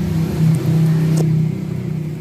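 Car engine running with a steady low hum, and a brief click about a second in.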